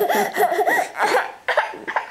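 A toddler's high-pitched, whiny vocalising: several short cries that rise and fall in pitch through the first second. These are followed by short, breathy bursts of laughter.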